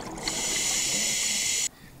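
A scuba regulator hissing as a diver breathes in, a steady high hiss of about a second and a half that cuts off suddenly.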